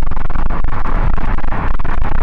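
Loud wind rushing into a car at highway speed, buffeting the clip-on microphone in irregular gusts, as if a window has been opened to let a mosquito out.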